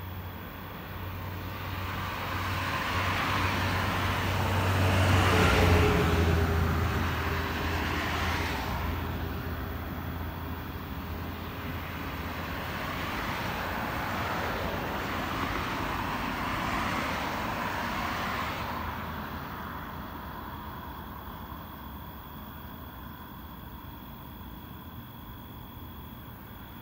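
Road vehicles passing by: a swell of tyre and engine noise peaks about six seconds in, its pitch falling as it goes past. A second, longer and gentler swell follows and then fades.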